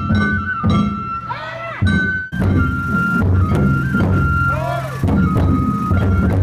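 Japanese festival float music (hayashi): a high flute holds a stepping melody over steady taiko drum beats, with a short break about two seconds in.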